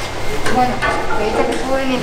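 People talking; the words are not made out.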